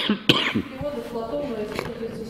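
A man coughing twice in quick succession, short and sharp, the second cough about a third of a second in. A quiet voice follows.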